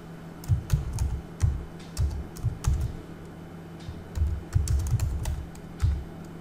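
Typing on a computer keyboard: irregular keystrokes in short runs, with a pause about halfway through.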